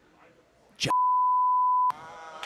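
Censor bleep: a single steady tone lasting about a second, masking a swear word.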